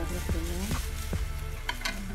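Metal spoon stirring liquid in a ceramic-coated saucepan, swirling the water, with a few light clinks of the spoon against the pot in the second half.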